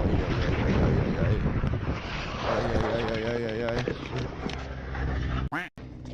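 Wind noise and a steady low rumble on a motorcycle rider's helmet-camera microphone as he crashes and tumbles onto the pavement. A voice is heard briefly about two and a half seconds in. The sound cuts out for a moment near the end.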